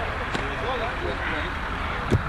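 Steady low rumble and hiss of outdoor background noise, with a faint voice talking briefly in the first half.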